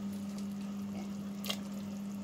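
Soup bubbling at a boil in a stainless-steel pot, over a steady low hum, with one sharp click about one and a half seconds in.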